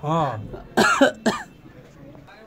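A man's voice briefly, then a short fit of coughing, about three harsh coughs in quick succession about a second in.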